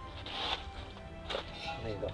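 Quiet handling noises from an old wooden beehive being worked by hand: a soft rustle, then a single light knock, over faint background music.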